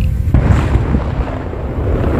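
Deep rumbling booms of the Hunga Tonga–Hunga Ha'apai undersea volcanic eruption, starting suddenly just after the start and rolling on without a break.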